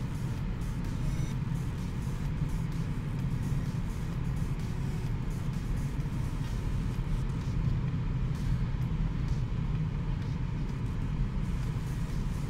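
Steady low cabin drone of a BMW 630d Gran Turismo running at motorway speed, mostly road and tyre noise, with music playing over it.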